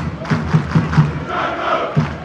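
A crowd chanting over a steady beat of low thumps, about four a second, with a louder swell of voices in the second half.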